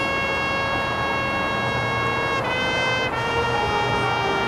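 High school marching band playing long held chords, with the brass to the fore. The chord changes about two and a half seconds in and again near three seconds.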